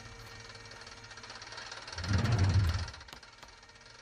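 Studio-logo sound effects played backwards: a long noisy wash with a louder low rumbling swell about two seconds in.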